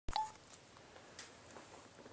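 A sharp click and a brief single-pitched electronic beep right at the start, then faint room tone with a few small scattered clicks.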